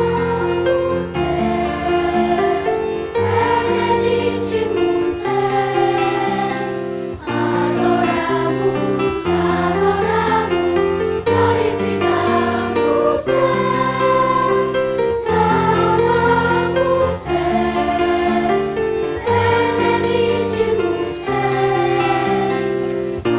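Children's choir singing a hymn together over steady accompanying chords.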